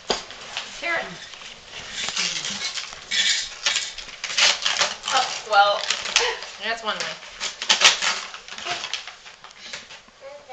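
Tissue paper rustling and crinkling in bursts as a gift bag is unpacked by hand, with voices talking in the room.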